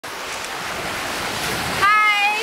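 Small lake waves washing and breaking along the shoreline, with wind on the microphone. A woman's high-pitched voice begins just before the end.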